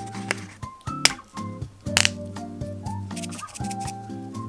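Background music, with sharp clicks and crinkles from a plastic blister pack of lead-test swabs being opened and handled; the loudest clicks come about one and two seconds in.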